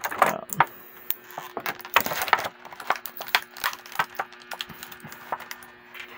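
Clear plastic blister packaging being handled, with crinkles and irregular sharp clicks, and small plastic flame effect pieces tapped down onto a tabletop.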